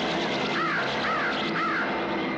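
Harsh bird screeches from a flock attacking a man: three short rising-and-falling cries about half a second apart, over a dense background din.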